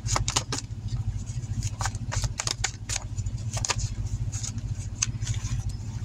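Tarot cards being shuffled and handled, giving irregular sharp clicks and flicks. Under them runs the steady low rumble of a car's engine idling.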